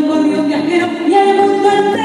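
A woman singing live into a handheld microphone, her voice carried through the hall's sound system, holding one long note through the second half.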